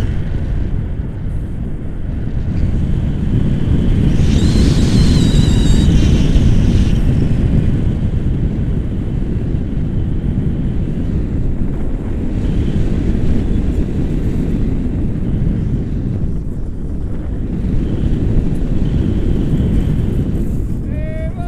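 Airflow in flight on a tandem paraglider buffeting the microphone of a pole-held action camera: loud and steady, swelling and easing a little. A brief higher-pitched sound comes through about four seconds in.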